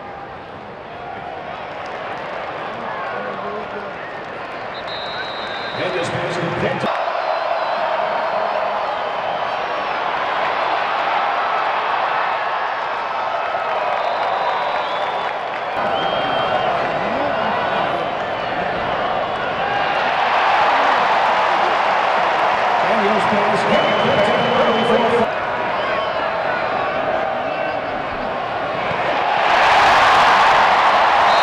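Football stadium crowd: a steady din of many voices and shouts that grows louder through the play and swells sharply near the end.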